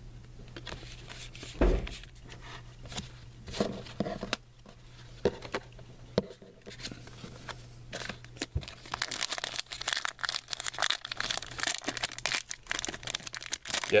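A few scattered taps of cards being handled and one low thump early on. From about halfway through comes a dense crackle as a foil trading-card pack is torn open along its crimped seal and crinkled.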